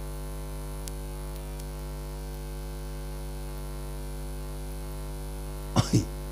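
Steady electrical hum with a stack of even overtones, unchanging in level, as from a sound system's microphone line. A short voice sound cuts in near the end.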